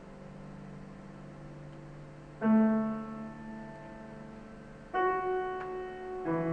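Grand piano playing slow, sparse chords: a held low chord fades away, then a loud chord is struck about two and a half seconds in and another near the end, each left to ring.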